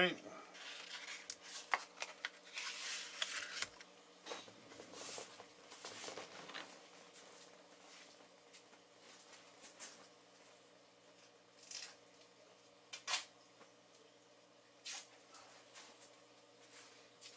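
Hands handling power-supply parts and a plastic insulating sheet on a workbench: irregular rustling and sharp clicks, busiest in the first several seconds, then a few isolated clicks, over a faint steady electrical hum.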